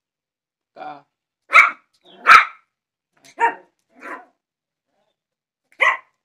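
Small white fluffy puppy barking: six short barks spread over a few seconds, the two loudest about one and a half and two seconds in.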